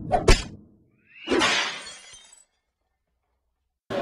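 Sound effects for an animated title logo: two sharp knocks at the start, then, about a second in, a burst of noise, strongest in the highs, that fades away over about a second.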